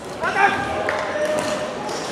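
Voices echoing in a large sports hall, with a sudden squeaky rising sound and a knock about a quarter of a second in.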